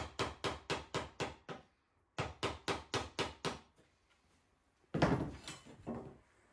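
Timber being worked down by hand instead of with an electric planer: quick, sharp strokes of a hand tool on wood, about six a second, in two runs with a short pause between. A single louder knock comes about five seconds in.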